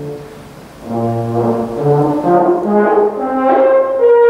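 Solo euphonium playing a variation passage: after a short break, a low note about a second in, then a run of notes climbing to a higher note held near the end.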